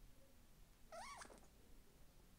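A cat's single short meow about a second in, rising and then falling in pitch, faint over near-silent room tone.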